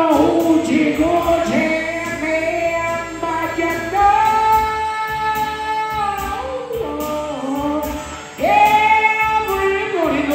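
Electric blues band playing, with a lead line of long held, wavering melody notes over guitar and bass. The music drops away briefly around eight seconds in, then comes back loud.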